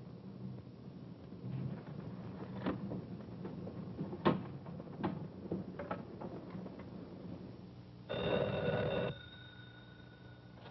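Electromechanical bell of a black rotary desk telephone ringing once, about a second long, near the end: an incoming call. A few faint clicks come before it.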